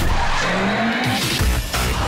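Electric airport passenger cart speeding across a polished terminal floor, its tyres squealing, over music.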